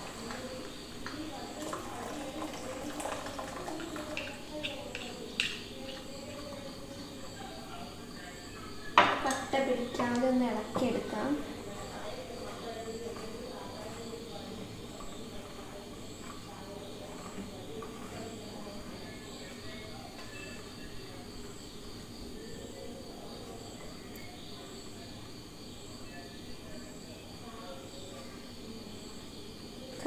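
A wooden spoon stirs a milky mixture in a stainless steel pot on a gas burner, with a few light knocks and scrapes against the pot in the first few seconds. Low voices run underneath, louder for a couple of seconds about nine seconds in.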